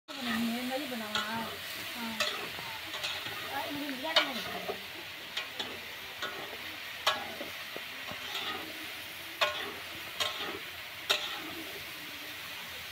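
Food frying and sizzling steadily in a steel kadhai, stirred with a metal spatula that clinks sharply against the pan about once a second. Faint voices in the first few seconds.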